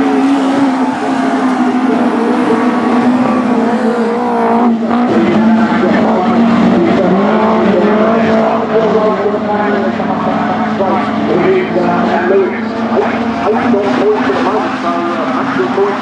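Several autograss racing cars' engines running hard together, their pitches rising and falling and overlapping as the pack laps a dirt oval.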